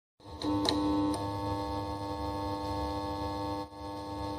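Synthesized outro sound effect: a few glitchy electric crackles in the first second, then a steady synthesizer drone with a buzzing hum.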